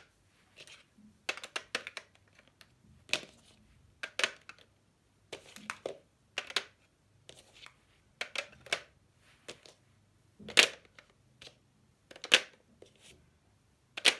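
Plastic highlighter pens clicking and knocking against one another and a clear acrylic tray as they are set in a row, in short irregular taps, with two louder knocks in the later part.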